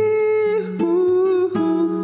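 A man humming a wordless melody in long held notes over a nylon-string classical guitar, with a few plucked notes under the voice.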